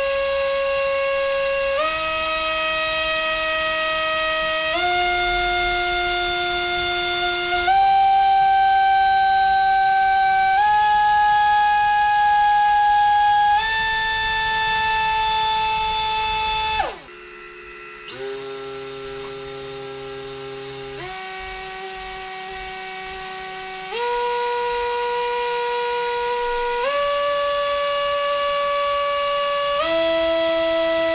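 Small brushless drone motors spinning Gemfan 4024 propellers on a thrust stand, a steady whine that steps up in pitch with each throttle step, about every three seconds. A little past halfway the whine glides quickly down as the motors spool down, then it comes back quieter and lower and steps up again.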